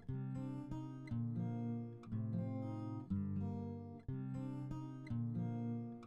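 Background music on acoustic guitar, a new strummed chord about once a second.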